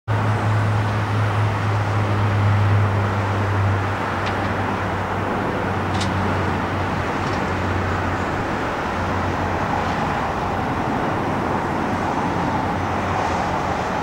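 Steady outdoor noise of road traffic, with a low hum that is loudest over the first four seconds and then eases.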